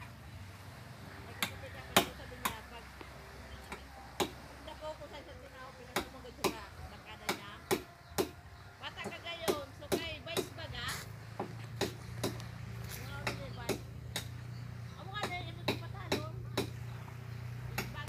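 A series of sharp, irregular clicks, one or two a second, with faint voices and a low steady hum underneath.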